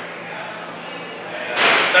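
Quiet hall room tone with a faint steady hum, then a short, sharp rush of noise about a second and a half in, just before speech resumes.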